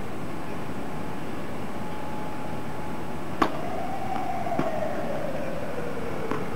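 Tennis ball struck by a racket twice, about a second apart, the first sharp and the louder. Under the hits, steady outdoor background noise and a faint whine that slides slowly down in pitch over the last few seconds.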